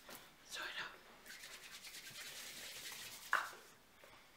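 Two short, sharp breaths, one about half a second in and a stronger one near the end, with a soft hiss between them. They are the masseuse's quick forceful breaths as her hands sweep fast around the boy's head during a head massage.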